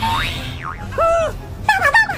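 A cartoon "boing" sound effect: springy tones that sweep up and then bend up and down, over background music.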